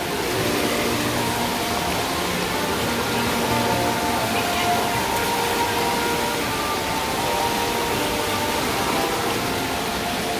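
Water rushing steadily down a concrete rapids channel and spilling over low stone cascades, with faint music underneath.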